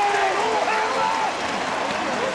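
Ballpark crowd cheering and applauding a home run, many voices at once.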